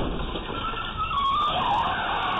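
An SUV crashing into a brick planter, then its tyres squealing with a wavering pitch as it spins its wheels and speeds away.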